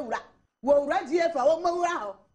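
A high-pitched voice talking or chanting in short phrases, with a pause of about half a second near the start.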